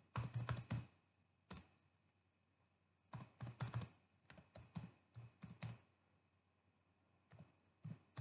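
Typing on a computer keyboard in short runs of keystrokes: a quick run at the start, a single key about a second and a half in, a longer run from about three to six seconds in, and a couple of taps near the end, as numbers are typed in.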